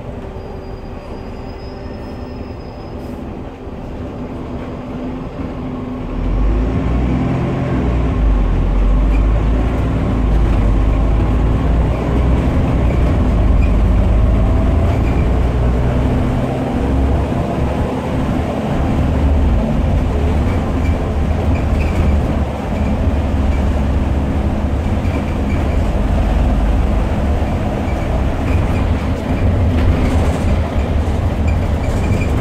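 Interior sound of a SOR NB12 city bus with an Iveco Tector six-cylinder diesel and ZF automatic gearbox, heard from the passenger cabin. It runs quieter at first, then pulls harder about six seconds in, and the engine note rises as the bus accelerates, with a steady deep rumble.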